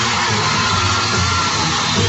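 Live band playing without vocals, a bass line stepping under a dense, hissy concert recording.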